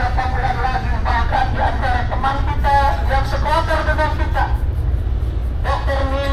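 A voice chanting a prayer in drawn-out, melodic phrases, breaking off about four and a half seconds in and resuming near the end, over a steady low rumble.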